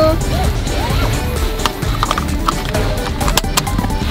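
Background music with a steady beat, over a few sharp clicks and rattles from a car seatbelt being pulled across and buckled. The loudest clicks, likely the latch catching, come about three and a half seconds in.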